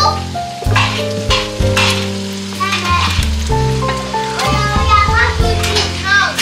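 Onions and blended tomato sizzling in hot oil in a pot as the mixture is poured in and stirred with a wooden spoon, with crackles now and then. Background music with held chords plays over it.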